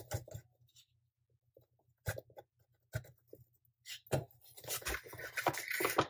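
Hands handling ingredient packaging: a few light clicks and knocks, then from about four seconds in a dense rustling and scraping that builds toward the end.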